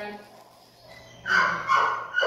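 A dog barking: two quick barks a little more than a second in, after a quiet moment.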